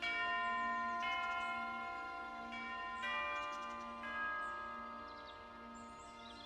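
Slow bell tones in a music score: struck notes about once a second, each ringing on and slowly fading, loudest at the first stroke.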